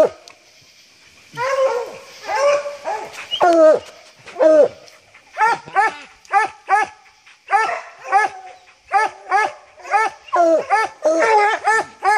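A pack of bear hounds barking treed at a bear up a tree. After a brief lull at the start, the barking builds into a steady, overlapping run of about two barks a second.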